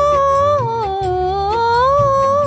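A woman singing a wordless vocal line without lyrics. She holds a steady high note, steps down through a wavering, ornamented phrase about half a second in, then climbs again near the end, over a soft low rhythmic accompaniment.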